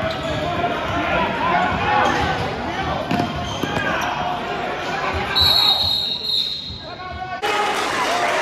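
Basketball game sound in a gym: a ball bouncing on the hardwood and players' and spectators' voices echoing in the hall, with a high shrill tone lasting under a second about five and a half seconds in. The sound changes abruptly near the end.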